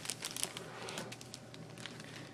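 Clear plastic packaging crinkling softly as it is handled, with a scatter of light crackles that thin out after the first second.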